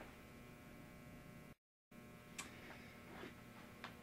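Near silence: room tone with a faint steady electrical hum and a few faint clicks, broken by a moment of complete silence about one and a half seconds in where the recording is cut.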